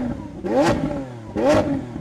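Engine-rev sound effect: an engine revved in quick blips, its pitch rising and falling about three times, each blip with a rushing whoosh.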